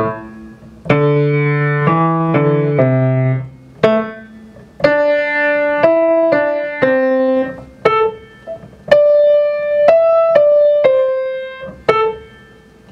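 Grand piano played slowly with the left hand alone, an étude in A minor, in phrases of a few seconds separated by short rests. Faint metronome ticks run about once a second at 60 beats per minute.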